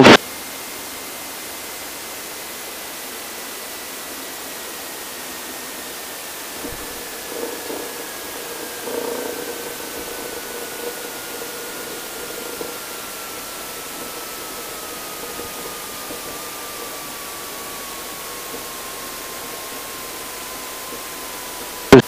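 Steady hiss from the Extra 300L's cockpit audio feed, with a faint whine falling slowly and evenly in pitch through the landing rollout. Faint irregular bumps come about seven to thirteen seconds in.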